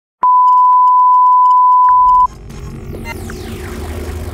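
A steady 1 kHz test tone, the kind that accompanies television colour bars, sounds loudly for about two seconds and cuts off suddenly. Just before it ends, the electronic psytrance track starts quietly under it, with a low rumble and falling synth sweeps.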